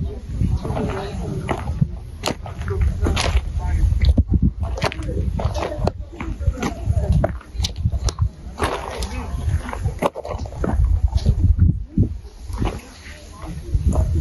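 Indistinct voices over a steady low rumble, with scattered short clicks and knocks, from an outdoor recording.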